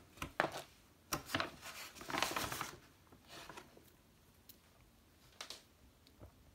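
Hands handling a field ration's contents on a wooden table: plastic wrappers rustle in several short bouts, the longest about two seconds in, with light knocks of tin cans being set down and picked up.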